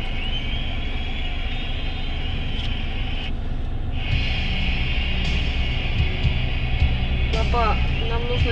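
Steady engine and traffic rumble heard from inside a car's cabin over a steady high hiss. The low rumble grows heavier about halfway through.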